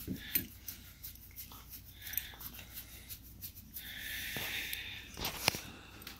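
Two dogs play-wrestling and mouthing each other: quiet breathy huffs, with a longer breath about four seconds in, among scattered light clicks and rustles.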